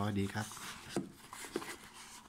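Cardboard parcel box handled and turned over in the hands, giving two light taps of cardboard, about a second in and again half a second later.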